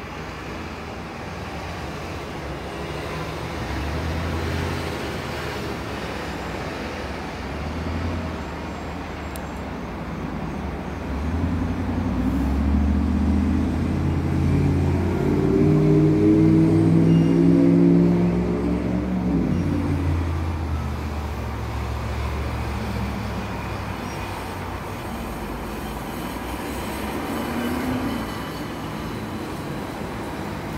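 Road traffic, with a large vehicle's engine growing louder through the middle, peaking, then fading as it passes.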